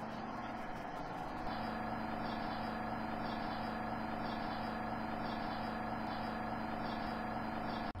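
A steady machine-like hum of several held tones over a low hiss, stepping up slightly in level about a second and a half in and holding even after that.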